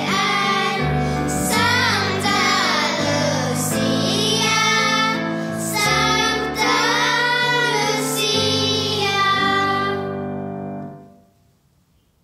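A group of children singing a Lucia song in unison over held keyboard chords. The song ends and dies away near the end.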